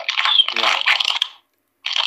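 Speech only: conversation, broken by a brief silent gap about a second and a half in.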